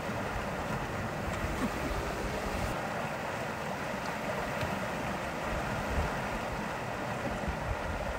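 Steady rush of water and wind from a sailboat under sail, with wind buffeting the microphone in uneven low rumbles.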